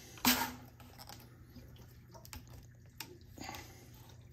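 Plastic bypass valve handles on a whole-house water filter head being turned by hand: a sharp clunk about a quarter second in, then scattered light clicks and ticks, with a brief soft hiss a little after three seconds.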